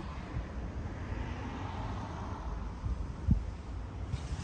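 Low rumble of wind and handling noise on a handheld phone microphone, with one thump about three seconds in.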